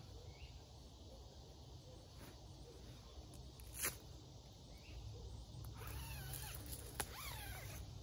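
Faint rustling of a sleeping bag being lifted, unfolded and spread out over a foam sleeping pad, with a sharp click a little before halfway and another near the end. Near the end come a few short animal calls that glide up and down in pitch.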